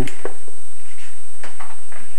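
A few faint, short knocks and rustles of handling as a foam glider wing is set onto a digital scale.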